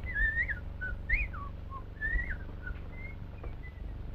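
A person whistling a short tune, the notes hopping and sliding up and down in a few quick phrases, over a steady low hum.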